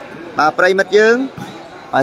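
A commentator's voice speaking in Khmer over a sand volleyball match, with the sharp smack of the ball being hit about half a second in.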